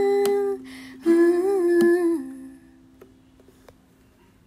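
A woman humming the closing notes of a song over a ukulele chord; the voice stops about two seconds in and the ukulele rings on faintly, fading away.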